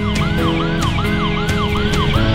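Fire engine siren on a fast yelp, its pitch sweeping up and down about four times a second, over guitar background music.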